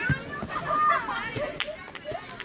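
Players' voices shouting and calling out during a beach volleyball rally, loudest about a second in. A short thump comes just after the start, with a few lighter knocks later.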